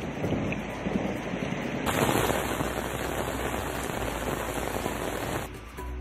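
Heavy rain pouring down on a street, a steady hiss of rain. It grows louder and brighter from about two seconds in, then falls back near the end.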